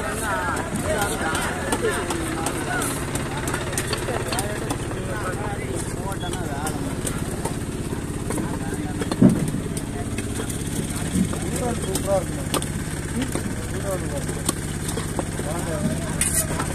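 Curved chopper knife cutting through a seer fish (king mackerel) on a wooden log block, with a few sharp chops, the loudest about nine seconds in as a steak is severed, over steady market chatter and a low motor hum.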